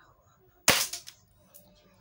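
Airsoft Glock 17 pistol firing a single shot, one sharp crack about two-thirds of a second in with a short fading tail. The shot goes through a cardboard box, a sign of the upgraded gun's power.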